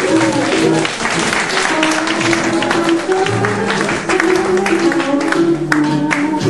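Band music led by guitar, with long held melody notes over a changing bass line and no singing.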